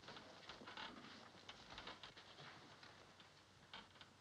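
Near silence with faint scattered clicks and rustles of small objects being handled, and a slightly sharper click near the end.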